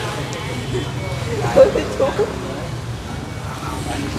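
Short laughter and a few voices over a steady low rumble of road traffic.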